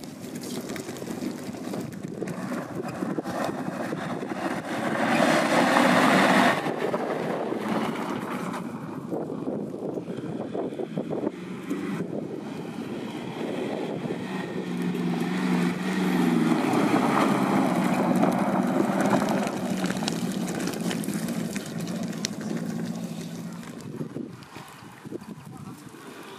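Off-road 4x4 engine working under load, with a loud surge about five seconds in. From about fifteen seconds on it gets louder again and holds a steady pitch for several seconds.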